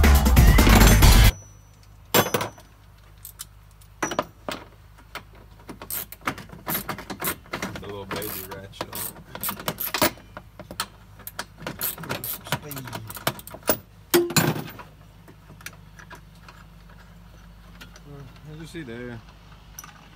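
Music cuts off about a second in. It is followed by irregular clicks and metallic knocks from hand tools working on the factory seat belt mount of a side-by-side while the belt is being removed, with one louder knock near the middle.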